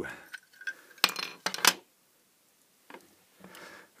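Hard plastic clicks and clatter as an opened plastic LED driver housing and its circuit board are handled, with two sharp knocks about a second and a second and a half in, then fainter handling noise.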